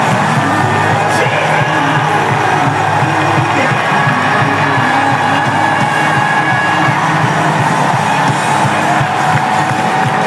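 A worship song with a full band plays loud and steady throughout.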